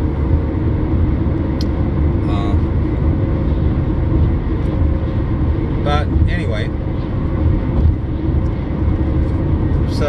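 Steady road and engine noise inside a car cruising at highway speed: a loud, even low rumble of tyres on pavement and running engine.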